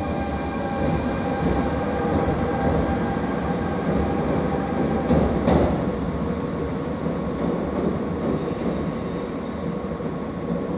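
An MI09 double-deck RER electric train pulling out of an underground station: a steady rumble of wheels on rail with several steady whining tones from the traction equipment. A high hiss cuts off about a second and a half in, and a single sharp knock comes about halfway through.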